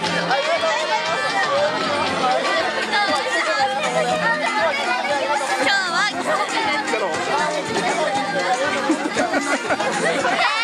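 Lively chatter of many people talking at once, high girls' voices prominent among them, with music underneath.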